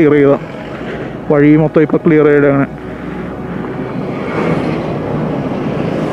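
Steady wind and road noise from a moving motorcycle, with its engine running underneath. The noise swells a little in the second half.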